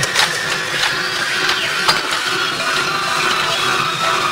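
Minimal tech house track in a noisy passage: a dense, grainy texture with a few sharp clicks and thin high tones held over it.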